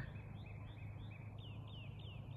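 A small songbird singing a run of short, repeated high chirps, about three a second. The first few notes are level and the later ones slur downward. A faint steady low hum runs underneath.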